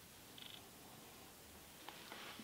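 Near silence: faint room tone, with a brief high chirp about half a second in and a soft click near the end.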